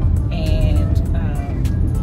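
Steady low rumble of a car heard from inside its cabin, the road and engine noise of driving. Short pitched sounds, voice or music, come over it twice.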